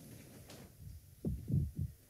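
Three dull, low thumps in quick succession, about a second and a quarter in, after a faint click: people getting up from armchairs and moving across a stage.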